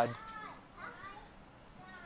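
Faint, high-pitched voice of a young child making a few short sounds, at the start, about a second in and near the end.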